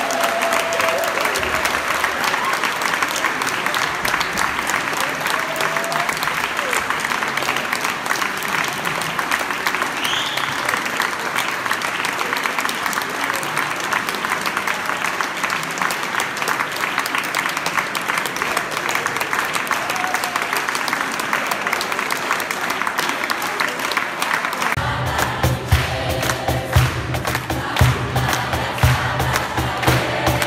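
Audience applauding steadily. About five seconds before the end, a cajon starts a steady beat and the choir begins to sing over it.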